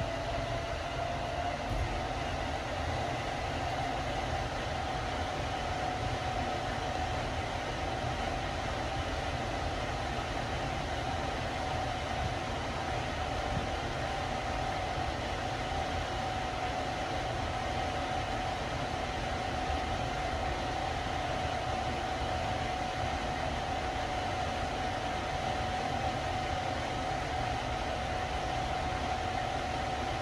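Hitachi machine-room-less traction lift car travelling upward at its 2 m/s rated speed: a steady rushing ride noise with a thin high whine that rises a little in pitch over the first few seconds as the car gets up to speed, then holds steady.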